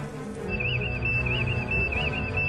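Tense dramatic film score with sustained low notes; about half a second in, a high warbling tone joins it and keeps going.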